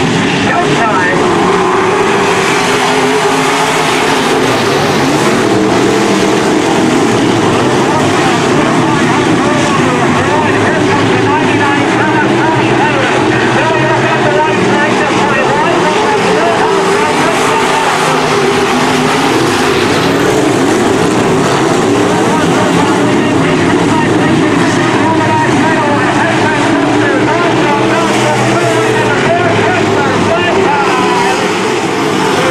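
A pack of sport modified dirt-track race cars with V8 engines running hard around the oval. Several engines overlap and rise and fall in pitch as the cars go into and out of the turns.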